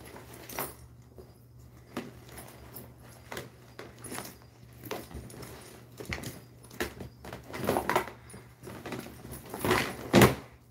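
Handbags being rummaged through and handled: irregular clicks, knocks and rustles, with louder handling noise about eight seconds in and just before the end as a brown leather bag is lifted out.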